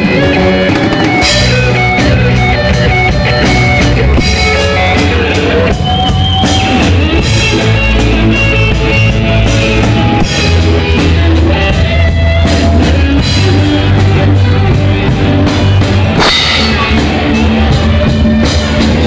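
A live rock band playing loudly: drum kit, electric bass guitar and guitar, with sustained, bending lead notes over a steady beat.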